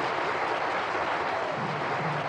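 A large audience applauding, a dense steady clatter of many hands clapping. Low-pitched music starts to come in under the clapping about a second and a half in.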